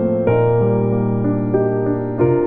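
Solo piano playing an arrangement of a Korean children's song, with a new chord struck about a quarter second in and held notes ringing under a moving melody.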